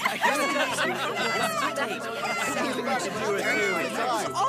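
Overlapping chatter of many young voices talking at once: a class of students all speaking together.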